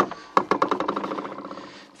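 Motorised retractable entry step under a Mercedes Sprinter's sliding door retracting: sharp clicks at the start and about a third of a second in, then a steady motor hum that slowly fades.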